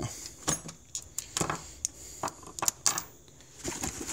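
Small metal hand tools, sockets and driver bits, clinking against each other as they are put back into a tool bag: a string of about eight sharp clinks, a few ringing briefly.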